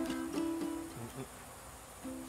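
Ukulele strumming chords for about the first second, then breaking off for a moment before the strumming picks up again at the end. In the gap, faint insects buzzing at a steady high pitch.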